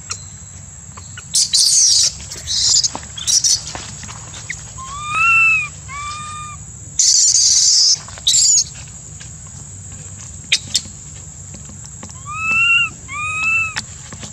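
Baby macaque crying in a temper with short arched coo calls, rising then falling, in two pairs: one about five seconds in and one near the end. Short hissy bursts come between them, the loudest about seven seconds in, over a steady high insect whine.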